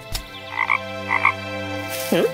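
Cartoon frog croaking twice: two short calls about half a second apart, over a steady low background tone.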